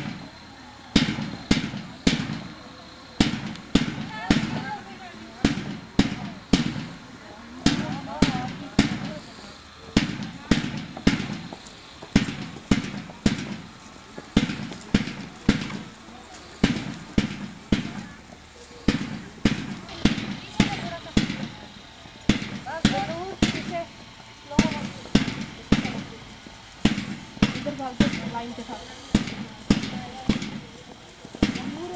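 A drum struck in a steady marching beat, with sharp strokes about twice a second to keep the marchers in step. Voices are faintly heard underneath.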